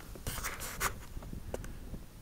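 Handling noise on the handheld camera's microphone: a few short scratchy rubs in the first second and another about one and a half seconds in, over a low uneven rumble.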